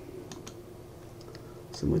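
A few faint computer mouse clicks over a steady low hum, with a man starting to speak near the end.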